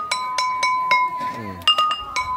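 Traditional Thai mahori ensemble playing: a run of bright struck metal notes, each ringing on clear and sustained, with a voice heard over it.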